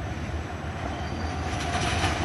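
Steady low rumble of passing traffic, growing slowly louder, with a faint steady whine joining in about half a second in.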